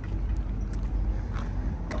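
Manual Corvette's LS3 V8 idling across the lot, a low steady rumble, with a few faint clicks.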